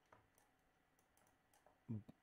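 Near silence with a few faint, sparse clicks; a man's voice starts a word just before the end.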